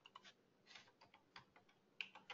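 Faint, scattered keystrokes on a computer keyboard: a run of light, irregular clicks.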